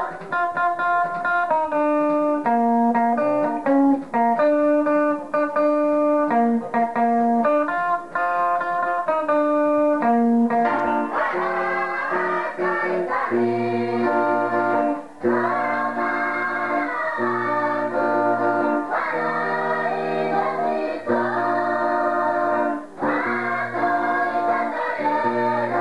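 Gospel music: a melody of steady held instrument notes, joined about halfway through by voices singing over a repeating bass line.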